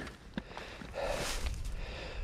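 Faint handling noise: soft rustling with a single sharp click a little under half a second in.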